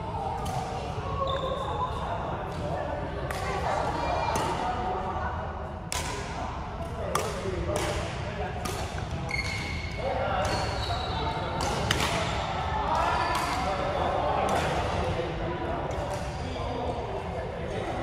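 Badminton rally in an echoing sports hall: rackets strike the shuttlecock in a series of sharp hits, with brief high squeaks from shoes on the court floor.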